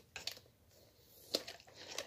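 Adhesive tape being picked and peeled off a clear plastic blister package, with faint crinkling and a few light clicks of the plastic, one sharper about two-thirds in.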